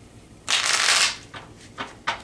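A tarot deck being shuffled by hand: a dense flutter of cards lasting about half a second, then a few short clicks as the cards are handled.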